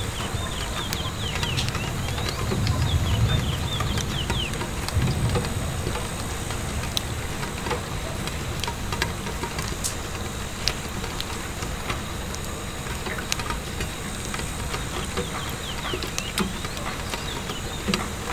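Steady rain pattering on window glass with scattered sharp ticks and pops. A low rumble swells about two seconds in and eases off by about six seconds.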